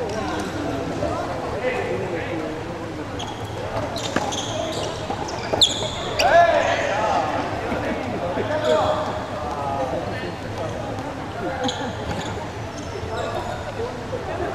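Indistinct voices echoing in a large sports hall, with a few sharp knocks as a ball is struck by rackets and bounces on the wooden floor during a rally.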